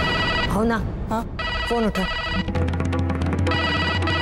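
Electronic landline telephone ringing in repeated trilling bursts over dramatic background music, with gliding musical swells in the first half.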